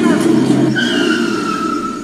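Road and engine noise from a vehicle moving at speed, with a high whine that starts before the midpoint and falls slowly in pitch.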